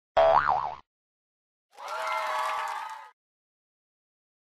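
Intro sound effects for a title card: a short springy 'boing' whose pitch wobbles up and down, then, a second later, a chord of several tones that swells up and fades away over about a second and a half.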